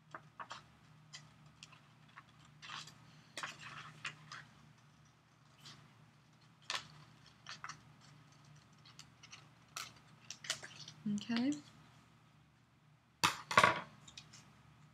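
Small scissors snipping through paper in short, irregular cuts. About 11 s in there is a brief hum of a voice, and near the end a louder burst as the paper is handled.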